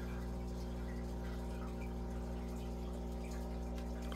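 Aquarium sponge filters bubbling steadily as air rises through their lift tubes, over a constant low hum.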